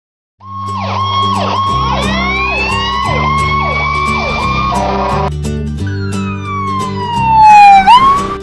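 Cartoon emergency-vehicle siren sound effects over background music with a steady bass line, starting about half a second in: a steady high tone broken by quick falling chirps, then a long falling wail that sweeps back up near the end, the loudest part.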